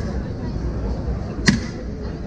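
Sharp metallic clang of a Turkish ice cream vendor's long metal paddle striking the stall's metal tubs, once about one and a half seconds in, with a brief ring, over steady street hubbub.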